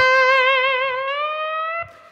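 Electric guitar played with a glass slide in standard tuning: one picked note held with slide vibrato and drawn slowly upward without being picked again, then damped off sharply near the end.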